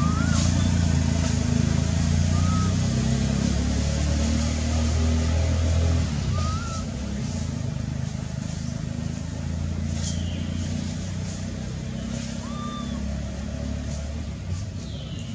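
A motor vehicle engine running with a steady low hum that drops a little about six seconds in. A few short high chirps sound over it.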